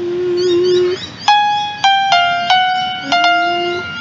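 Single keyboard notes struck one at a time, five notes stepping around F5, each ringing and fading: the pitch of a sung high note is being found by ear. Before and between them a voice hums a held note about an octave lower.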